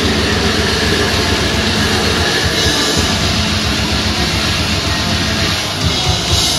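Death-metal band playing live: heavily distorted electric guitars and bass over rapid drumming, a dense, unbroken wall of sound.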